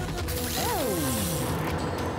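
Cartoon sound effect of a machine winding down: mechanical clatter and a whine that rises briefly, then falls steadily in pitch for about a second, over background music.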